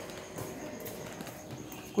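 Quiet room noise with light footsteps on a hard floor and faint distant voices.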